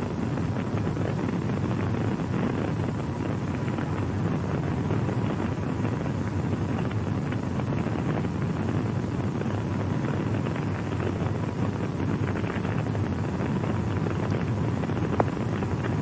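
Space Shuttle's solid rocket boosters and main engines firing during ascent: a low, steady rumble that holds an even level throughout.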